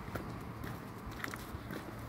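Footsteps through dry fallen leaves on a woodland floor, with irregular crackles of leaves and twigs underfoot.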